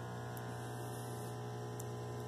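Steady low electrical mains hum with faint, even overtones above it, unchanging throughout.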